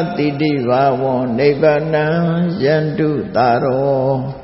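A Buddhist monk's voice chanting Pali in a steady, drawn-out monotone. Each syllable is held at a nearly level pitch before sliding into the next.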